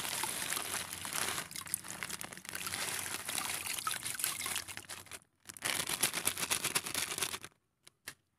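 Table salt poured in a stream from a plastic bag into a bucket of water, with a steady pouring and splashing. The sound breaks off for a moment about five seconds in, resumes, and stops shortly before the end.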